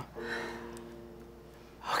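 Quiet background music holding a soft steady chord, with a quick intake of breath just before the end.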